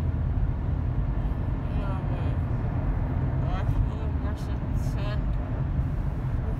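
Steady low road and engine rumble inside a moving car's cabin, with a few faint snatches of quiet speech.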